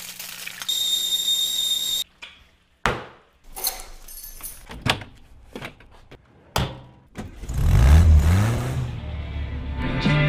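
A frying pan sizzling for about a second, then a run of sharp knocks and clicks. Near the end comes the loudest part: a classic Volkswagen Beetle's air-cooled flat-four engine starting and revving.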